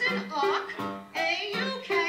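A woman singing a show tune over piano accompaniment, in short phrases over held notes.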